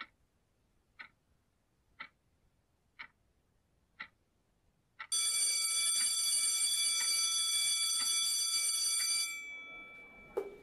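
A clock ticking once a second. About five seconds in, a school bell starts ringing loudly, rings steadily for about four seconds, then fades.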